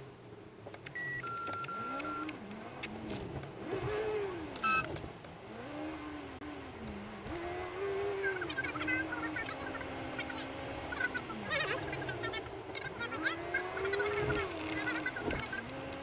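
A voice with long, smooth rises and falls in pitch. A two-tone electronic beep comes about a second in, and another short beep just before five seconds.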